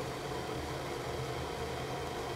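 Pot of water boiling on an induction hob: a steady hiss with a low hum beneath it.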